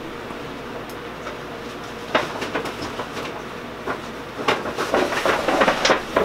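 Rummaging through belongings: a steady hiss at first, then from about two seconds in, rustling and small knocks and clatters of items being handled, growing busier near the end.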